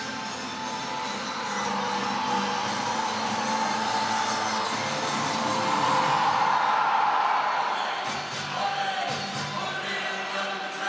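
Music played over a football stadium's PA system as the teams walk out, with the crowd's cheering underneath; it swells about six seconds in.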